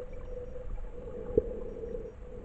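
Muffled underwater sound picked up by a submerged camera: a steady hum over a low rumble, with one sharp knock about one and a half seconds in.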